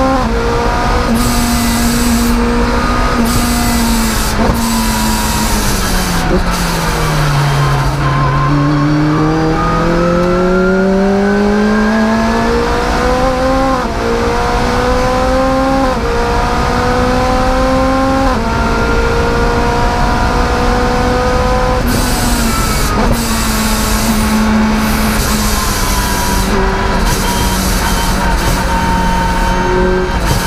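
Rotrex-supercharged Lotus Exige engine at racing revs, heard from inside the cockpit. The revs dip and recover about a quarter of the way in, then climb in three rising pulls, each ending in a short drop in pitch as the gear changes. The revs fall away as the throttle is lifted about two-thirds of the way in.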